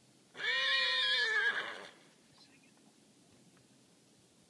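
A horse whinnying once: a single call of about a second and a half that holds one pitch, then wavers as it fades.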